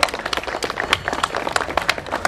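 Applause: many hands clapping at an uneven pace.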